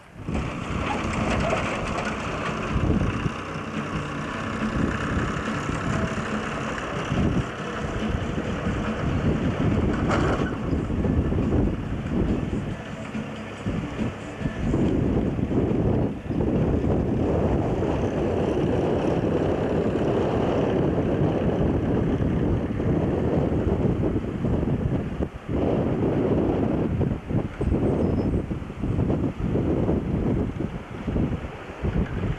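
Wind buffeting the camcorder's microphone in gusts, a heavy, rushing noise that grows stronger in the second half.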